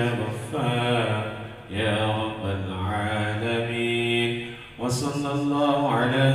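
A man chanting a Muslim prayer (doa) in long, drawn-out melodic phrases, pausing for breath twice.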